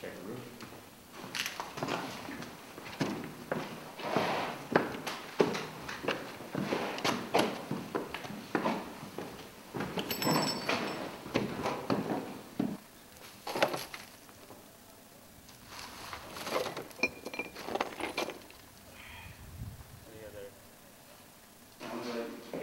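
Indistinct voices mixed with many short knocks, scuffs and footsteps from soldiers in gear moving through a bare stairwell. The clatter is busiest in the first two thirds and thins out near the end.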